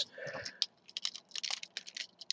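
A plastic Transformers Railspike action figure handled by hand: a quick, irregular run of light plastic clicks and taps as its leg and hip joints are moved.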